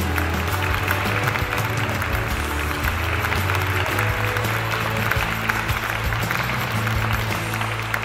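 A crowd applauding steadily, many hands clapping at once, over background music with sustained low notes.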